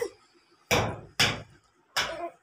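A toddler's hand slapping a wooden wardrobe door: three sharp bangs, the first two about half a second apart and the third near the end.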